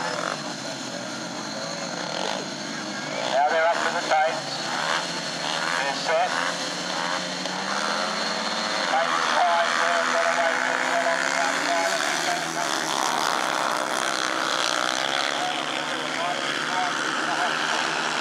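Solo speedway bikes' single-cylinder 500cc methanol engines revving at the start line, with short sharp blips a few seconds in. About nine seconds in, all four are opened up together at the start and run hard as the pack goes into the first turn.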